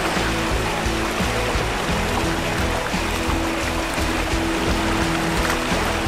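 Background music with sustained tones over the steady rush of creek water.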